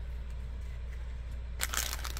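Plastic packaging crinkling as a small wrapped packet is picked up, starting near the end; before that only a low steady hum.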